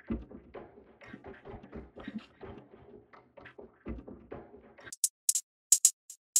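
Faint, uneven soft taps, then from about five seconds in a run of short, crisp, high percussion hits from a sampled percussion loop being auditioned in a DAW.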